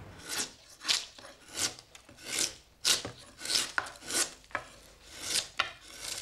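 Chisel cutting into the wooden plate of a viol being carved by hand: a series of short cutting strokes, about one every half to three-quarters of a second, as shavings are pared away.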